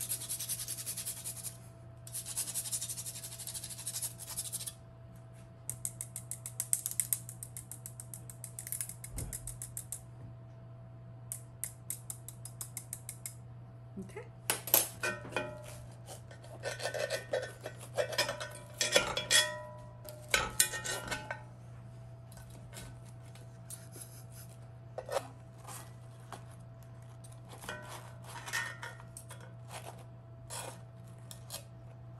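Whole nutmeg grated on a rasp grater in quick, fine strokes, followed by metal utensils clinking and scraping against a cast-iron skillet.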